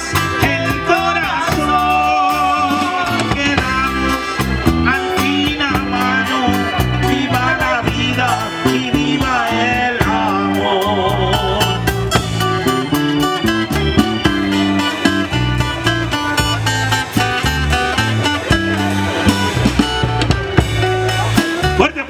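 Live band playing a Mexican romantic ballad: electric bass, drums, keyboard and electric guitar under a wavering lead melody, with no words sung.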